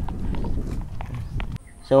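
Footsteps of a person walking along a stone stepping-path through grass, irregular light steps over a low rumble. The sound cuts off abruptly about one and a half seconds in, and a man starts talking near the end.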